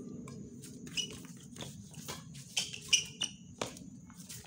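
Badminton rally on a hard outdoor court: several sharp racket-on-shuttlecock hits and footfalls, with short rubber-sole squeaks on the court surface, the loudest hit about three seconds in.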